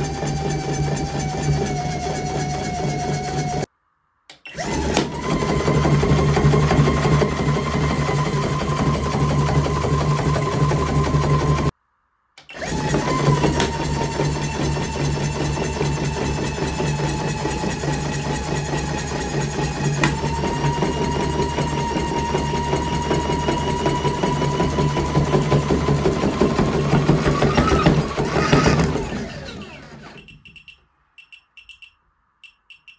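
Bluey Dance and Play plush toy's gear motor running overdriven from a bench power supply: a steady whine over a low hum. It breaks off twice briefly and comes back higher in pitch, and near the end the whine rises sharply, then dies away.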